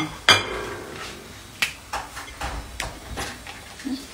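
Kitchen cookware clattering: one sharp, ringing clank of a pan or utensil about a third of a second in, then a few lighter knocks and clinks.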